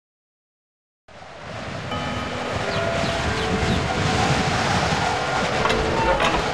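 Sound effect for an animated intro logo: a rushing noise with faint held tones in it, fading in about a second in and building to a steady level.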